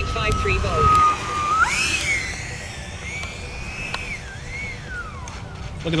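Electric ducted fan of an E-flite Viper 90mm RC jet, driven by an 8S 1500kv motor, whining during its rollout on the runway. The pitch holds steady, jumps up sharply about a second and a half in, wavers, then falls away near the end. Wind rumbles on the microphone early on.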